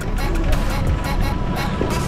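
Background music over a steady low rumble, with faint distant voices.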